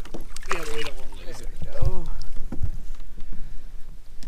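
A hooked spotted bass splashing at the water's surface as it is scooped into a landing net beside the boat, with excited wordless voices and a low thump about two seconds in. Wind rumbles on the microphone.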